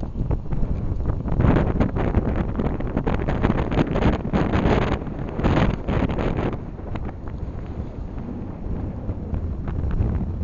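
Wind buffeting the camera's microphone in rough gusts. It is strongest from about one to six and a half seconds in, then eases to a steadier rumble.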